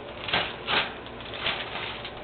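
Zip-top plastic bag of frozen huckleberries crinkling and rustling as it is handled, with three louder rustles in the first second and a half.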